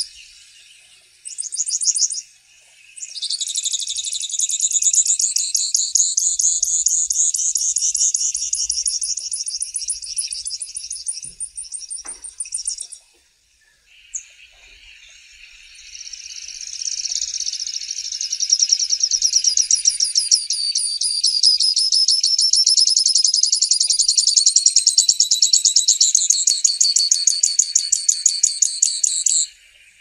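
Grassland yellow finch singing: two long, rapid, high-pitched trilled songs of about ten seconds each, with a short gap between them, and a brief phrase about a second in.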